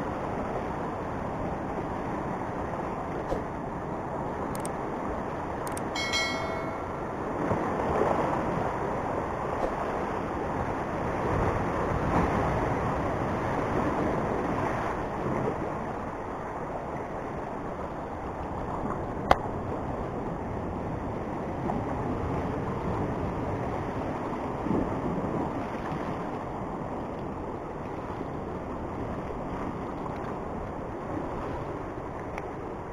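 Sea surf washing and breaking over the rocks just below, swelling and easing, with wind on the microphone. A brief high squeak comes about six seconds in, and a single sharp click a little past the middle.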